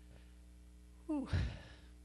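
A man's breathy, sighing 'ooh' into a handheld microphone about a second in, falling in pitch, with a low thump under it. Before it, only quiet room tone with a faint steady hum.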